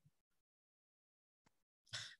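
Near silence, with only a faint soft sound near the end.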